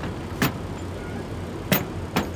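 Two sharp clicks, about a second and a quarter apart, the second the louder, as parts and tools are handled on a truck bed, over a steady low rumble of vehicles.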